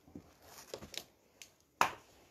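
Scattered light clicks and knocks from someone moving about close to the microphone, with one sharp, much louder knock near the end.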